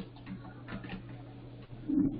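Computer keyboard keys being pressed: a run of irregular clicks over a steady low electrical hum.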